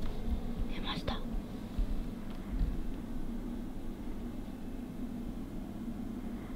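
A quiet room with a steady low hum, a brief soft whisper about a second in, and a few faint low bumps.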